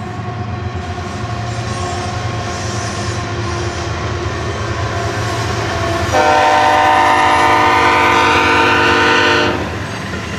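BNSF diesel locomotives passing close by, their engine noise and wheel rumble building. About six seconds in, a locomotive air horn sounds one long blast of several tones at once. It cuts off sharply about three seconds later.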